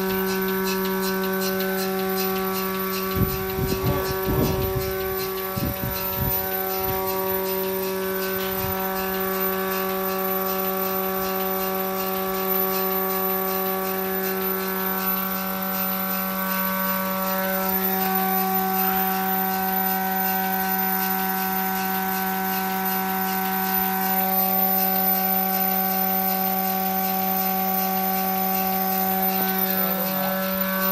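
Mini milking machine's vacuum pump motor running with a steady hum while the teat cups are on a cow. There are a few brief low knocks about three to five seconds in.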